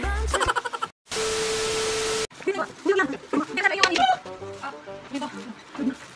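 Edited soundtrack: a pop song with singing stops just under a second in, and after a short gap a steady hiss with a low steady tone plays for about a second and cuts off abruptly. Voices follow.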